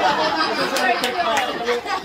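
Several people talking over one another in a small group, with lively, indistinct chatter.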